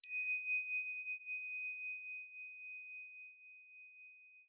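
A single struck chime tone, high and clear, ringing out and slowly fading; its higher overtones die away within the first two seconds while the main note lingers.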